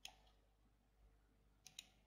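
Near silence broken by faint clicks of a computer mouse and keyboard as text is selected with the Shift key held: one click at the very start and two quick ones near the end.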